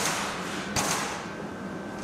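Kitchen clatter from metal utensils or equipment: a sharp knock at the start and another a little under a second in, the second followed by a brief rushing hiss, over a steady background hum.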